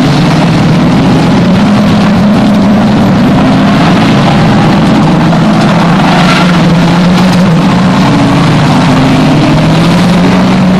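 Engines of several banger racing cars running at speed together, a loud, continuous mix of engine notes that waver up and down as the cars lap the track.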